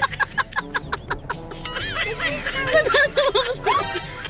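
Background music with a girl's rapid, giggling laughter over it.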